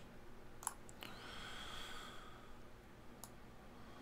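Quiet room tone with a few faint, sharp clicks, two close together near the start and one more about three seconds in.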